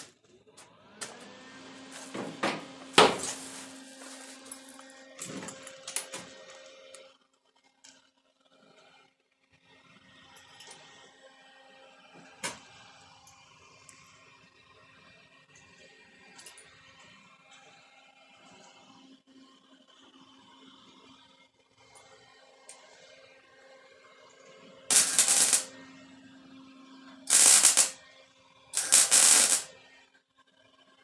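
Three short bursts of tack welding on the sheet-metal quarter panel of a 1957 Chevy near the end, each under about a second. Before them come handling clatter and one loud knock about three seconds in, over a steady low hum.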